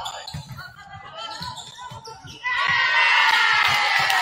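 A volleyball rally in a gym: dull thuds of the ball being played and feet on the court, with players calling out. About two and a half seconds in, loud, high-pitched cheering and shouting suddenly breaks out as the point is won.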